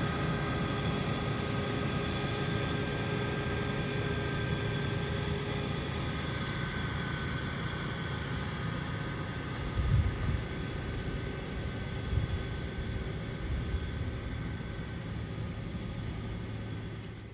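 Engine of a farm harvesting machine working a field, a steady low rumble with a faint whine over it that fades after about six seconds as the machine moves off. There is a brief louder bump about ten seconds in.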